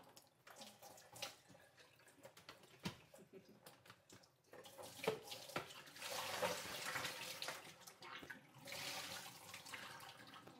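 A few light plastic knocks, then, from about halfway in, water splashing and running into a stainless kitchen sink as a Mr. Coffee iced tea maker is tipped to empty it.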